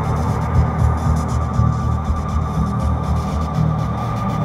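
Ambient electronic drone made from sculpted static and noise: a dense low hum that wavers unevenly, with a thin steady tone and a fainter hiss above it.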